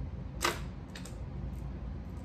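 Hard plastic clicking as fishing lures are handled and set into a plastic tackle box tray: one sharp click about half a second in and a fainter one about a second in, over a steady low hum.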